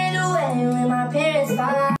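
Looped sample of a live vocal performance playing back: a sung melody over a steady held backing note. The sample has been noise-reduced, had its lows cut and is compressed to tame its peaks.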